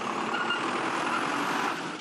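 City street traffic: a steady noise of vehicle engines and tyres on the road.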